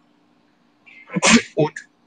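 A person sneezing once, a little over a second in.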